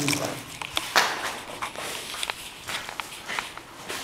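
Footsteps on a hard floor, with irregular scuffs and sharp knocks.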